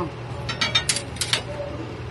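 Steel tire irons clinking against a truck wheel's rim and tire as the tire is pried at, a quick run of sharp metal clinks in the middle, over a steady low hum.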